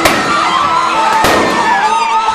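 Roman candle fireworks going off with two sharp bangs, one right at the start and one a little over a second later, over shouting voices.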